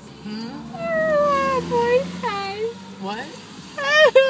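A young woman wailing and sobbing in a string of high, drawn-out cries that slide up and down in pitch, with a louder cry starting near the end. It is the tearful, out-of-it crying of someone groggy after having her wisdom teeth pulled.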